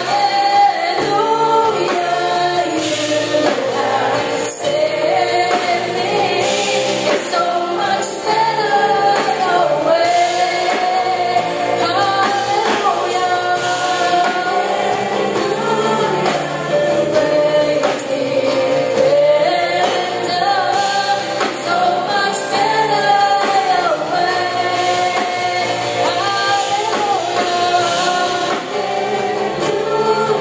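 A church worship team of female and male singers singing a Christian worship song together into microphones.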